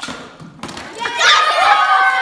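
A thud, then about a second in a group of children bursts into loud, high-pitched shrieks and cheers.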